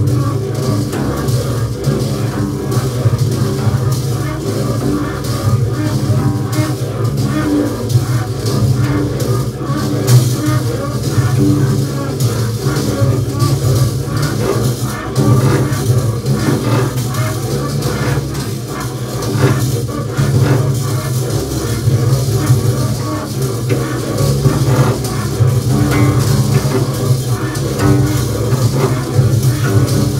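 Two double basses improvising together: a sustained low bowed drone runs throughout, with scratchy, clicking string sounds laid over it.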